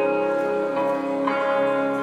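Live acoustic pop music in an instrumental passage with no singing. Bright chords ring out, with new notes struck about once a second, most likely on an acoustic guitar.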